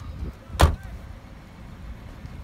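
A Subaru hatchback's rear passenger door slammed shut once, a single sharp bang about half a second in.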